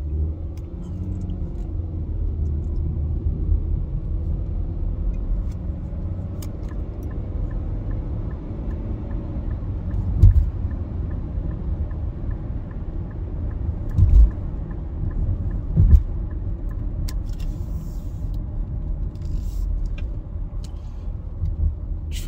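Steady low road and engine rumble inside a car's cabin while driving in traffic. Three short dull thumps come about halfway through and twice more a few seconds later, and a faint regular ticking runs through the later half.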